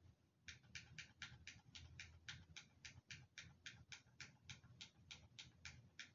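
Faint hi-hat of a hip-hop beat ticking on its own in an even pattern, about four ticks a second, starting about half a second in.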